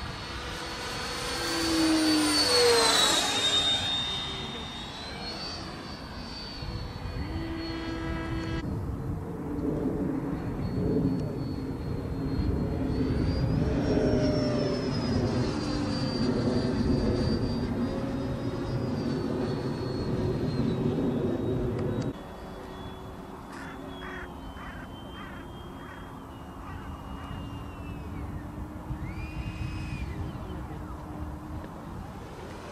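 Freewing F-4D Phantom RC jet's 90 mm electric ducted fan whining in flight. It is loudest about two to three seconds in, as it passes with its pitch dropping, and then gives a steadier whine that rises and falls over further passes. It is quieter in the last third.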